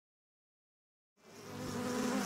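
Silence, then bees buzzing fade in about a second in and grow steadily louder.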